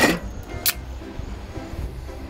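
A drink can's ring-pull cracked open, one short sharp hiss about two-thirds of a second in.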